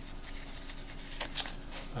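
Hands unwrapping a small wrapped package, with a few soft rustles of the wrapping a little past halfway.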